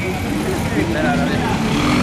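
Street traffic noise: motor vehicles running close by in a busy street, a steady low rumble under faint, muffled voices.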